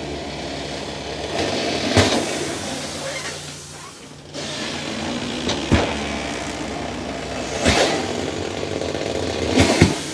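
Tire machine breaking the bead of a flat mud tire on a beadlock wheel: a steady machine hum that dips briefly about four seconds in, with a few sharp knocks as the bead-breaker lever is worked.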